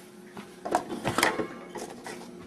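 Metal wire rack knocking and rattling against an electric stove's coil burner and drip pan as it is set in place: a few light, uneven knocks.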